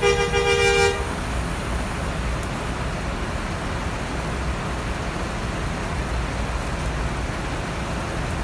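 A vehicle horn sounds once, a loud steady blare lasting about a second. After it come a steady hiss of rain and a low rumble.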